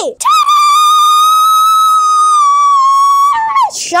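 A child's loud, long, high-pitched scream, held at one steady pitch for about three seconds and falling away near the end.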